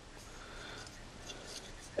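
Quiet room hiss with faint, soft handling noises as a folding knife is held and moved in the hand.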